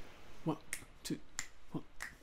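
Quiet finger snaps keeping time, roughly three a second, with a few short soft vocal sounds between them: a count-in setting the tempo for the a cappella part that follows.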